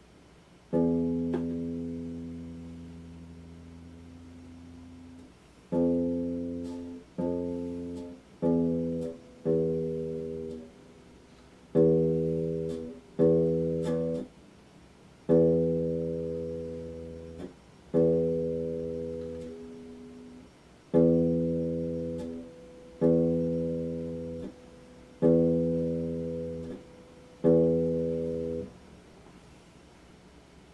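Electric guitar strummed one chord at a time, thirteen strums with much the same chord each time. The first is left ringing for about four seconds; the rest are each cut off after one to two seconds.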